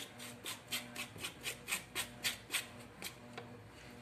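A spoon scraping the seeds and pith out of a halved green papaya: quick, even, faint scrapes about four a second, stopping shortly before the end.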